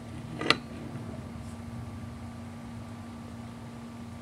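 A single sharp metallic click about half a second in, as an adjustable wrench is set on and turns the hex bolt of a clutch spring compressor, slowly releasing the scooter clutch's spring tension. A faint low steady hum underneath.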